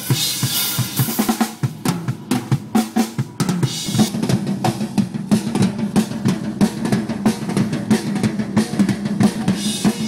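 Acoustic drum kit played fast and continuously: rapid snare and tom strokes over the bass drum, with cymbal crashes near the start and again about four seconds in.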